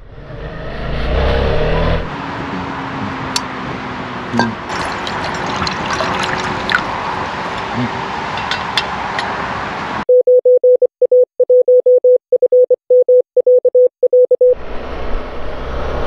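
Morse code: one steady beep tone keyed on and off in short and long beeps for about four seconds in the latter part, cutting in and out abruptly. Before it comes a stretch of motorcycle riding noise and outdoor noise with scattered small clicks, and riding noise returns near the end.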